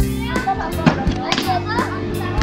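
Children's voices at play, talking and calling out, mixed with background guitar music that carries on from before.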